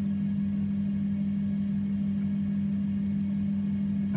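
Steady low machine hum, the even drone of a small electric motor running without change.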